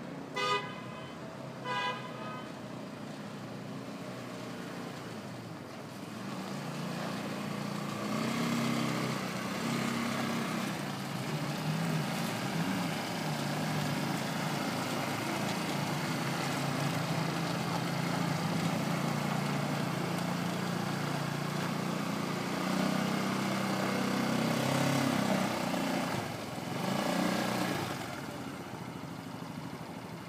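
Two short horn toots about a second apart, then a quad bike's engine running as it approaches and drives past close by, its pitch rising and falling with the throttle; the engine is loudest through the middle and fades near the end.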